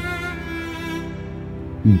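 Background music holding one steady, sustained chord on bowed strings.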